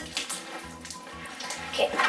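Homemade glue slime being kneaded and pressed against a tabletop by hands: soft, wet squishing.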